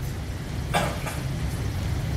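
Steady low rumble of room background noise, with one brief short sound a little under a second in.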